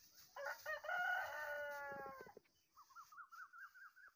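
A rooster crowing once: a few short notes, then a long drawn-out call of about two seconds. It is followed by a quick run of short, rising-and-falling chirping calls.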